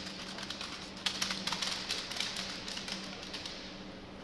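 Rifle drill ripple: a rapid run of sharp clicks and taps as the soldiers in a line handle their rifles one after another, hands slapping and rifles knocking. The clicks are densest about one to three seconds in.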